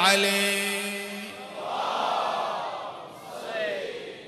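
A man chanting Arabic verse at a microphone ends his line on a long held note that fades after about a second. Then a crowd of listeners calls out together in response.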